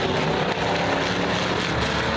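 Several enduro race cars' engines running at speed together, a steady overlapping mix of engine tones.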